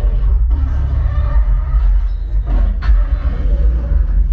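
Action-film soundtrack played loud through a Sonos Arc soundbar and Sonos Sub: a heavy, steady bass rumble under music and effects, with one sharp hit about three seconds in.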